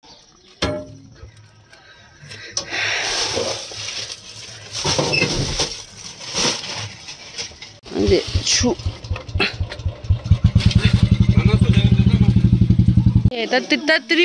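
Rustling and knocking as foil food containers and a plastic-wrapped pack of water bottles are handled. In the second half a small engine's low, even chugging grows louder and then cuts off suddenly near the end.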